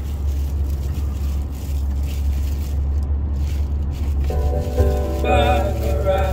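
Steady low rumble inside the cabin of a Tata Safari SUV on the move in city traffic. About four seconds in, music with a sung melody joins it.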